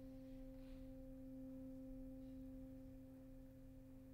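Alto saxophone holding one long, quiet note, steady in pitch.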